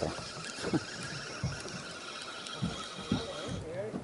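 Fishing reel being wound as a hooked fish is brought up to the boat: a faint steady whir with a few soft knocks, the whir dropping out near the end.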